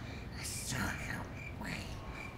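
A child speaking softly, close to a whisper, in short breathy phrases.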